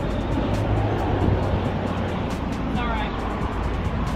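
Wind rumbling on the microphone outdoors, a steady low buffeting under women's voices and laughter.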